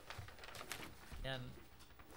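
Faint rustling and clicks of paper pages being handled, with one short spoken word about a second in.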